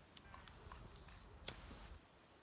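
A disposable lighter being struck to light a pipe: faint handling and small clicks, then a sharp click about one and a half seconds in, followed by a brief hiss.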